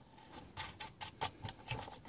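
Light, irregular clicks of a small metal nut being fitted onto an antenna socket that pokes through a plastic remote-control housing: about seven clicks over a second and a half.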